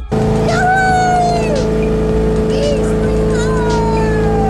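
People on a moving boat whooping and cheering in long, drawn-out calls that fall in pitch, over a steady drone of the boat's motor and wind on the microphone.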